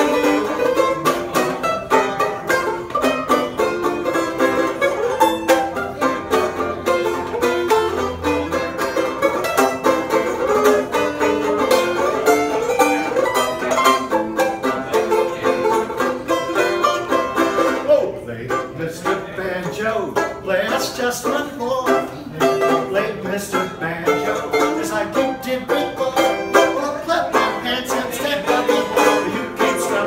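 A banjo played solo: picked notes in a quick, continuous stream.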